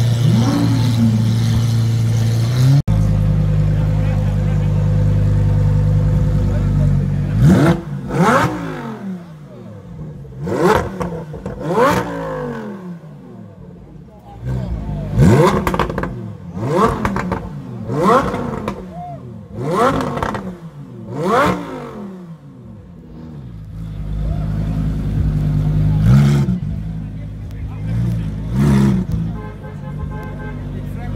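Lamborghini Huracán Performante's V10 revved hard again and again: about nine sharp rising-and-falling revs in two groups, then idling with two short blips near the end. In the first few seconds a Lamborghini Aventador SV's V12 idles with one short blip.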